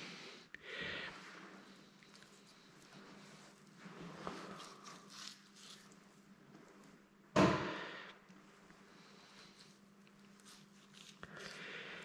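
Quiet knife trimming of venison on a plastic cutting board, with one sharp knock about seven seconds in, over a steady low hum.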